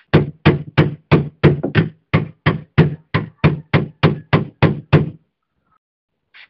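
A hammer striking a metal punch held against a rusty vintage greens cutter part, evenly spaced blows about three a second, around sixteen in all, each with a short metallic ring. The blows stop a little after five seconds.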